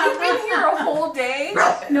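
A dog barking and yipping, with women's voices mixed in.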